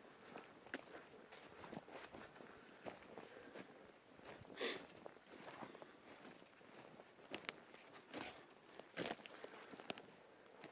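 Faint footsteps crunching over a dry forest floor of twigs, needles and deadfall. There is a louder crunch about halfway through and several sharper snaps near the end.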